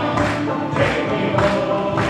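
A men's vocal group singing together with acoustic guitars. The singers clap on the beat, a little under two claps a second.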